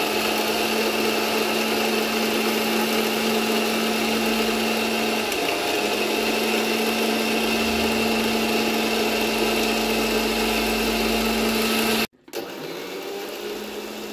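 Electric mixer grinder running steadily with a high motor whine, its steel jar churning collected milk cream toward butter for ghee. It cuts off suddenly about twelve seconds in, and a fainter hum follows.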